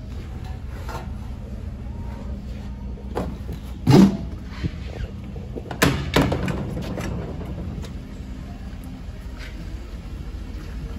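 Knocks against the pickup's body and aluminum topper: a loud ringing thump about four seconds in, then two sharp knocks about six seconds in, over a steady low hum.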